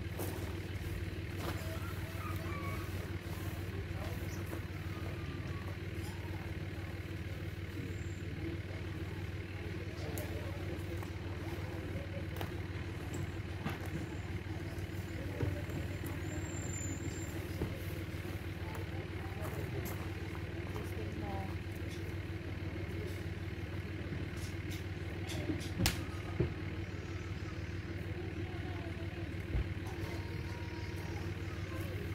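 A steady low engine hum, unchanging throughout, with a few sharp clicks and knocks from about halfway on, two close together near the end.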